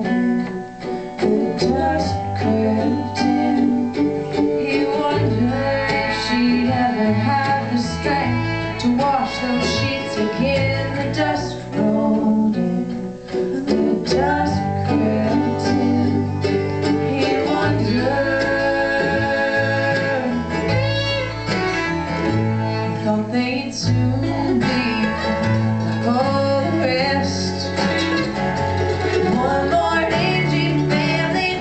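Live acoustic string-band music in a country-bluegrass style: strummed acoustic guitar, fiddle and bass guitar playing steadily together.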